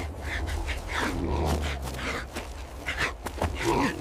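Animal growls and grunts, in short scattered calls over a steady low rumble.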